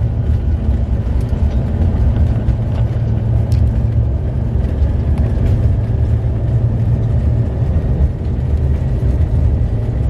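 Cabin noise inside a small passenger plane rolling along the taxiway: a steady, loud low rumble from the engines.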